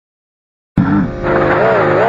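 A cartoon cannon blast, coming in suddenly and loudly about three-quarters of a second in after silence, and carrying on as a loud, wavering pitched sound to the end.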